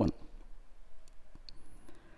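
Quiet pause after a spoken word ends, with two faint short clicks about a second and a half in.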